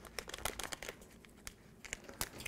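Faint crinkling and scattered small clicks of plastic film and sealant tape being handled and pressed down by hand.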